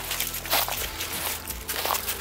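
Footsteps crunching irregularly through dry fallen leaves and patchy snow as a person and a husky walk.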